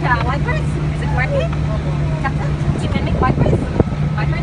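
Steady low engine drone of an amphibious water bus cruising afloat, with people's voices talking over it.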